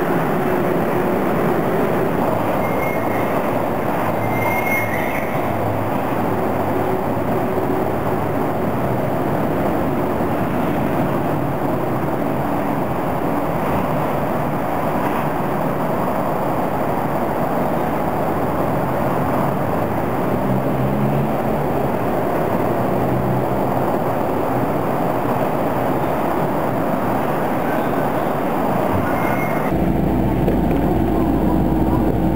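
Steady noise from an Osaka Monorail train, an even rumble that stays level throughout, with a couple of faint short high squeaks a few seconds in.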